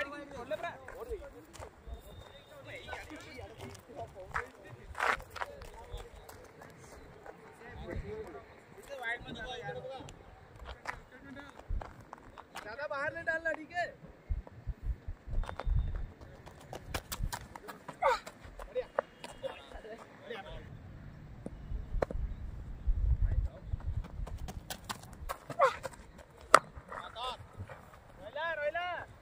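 Open-air cricket ground sound: players' distant shouts and calls, with scattered short knocks and clicks and running footsteps. A low rumble comes in for a few seconds about three quarters of the way through.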